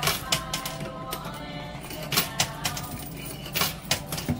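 Arcade music playing, with several sharp metallic clicks of quarters clinking in a coin pusher machine.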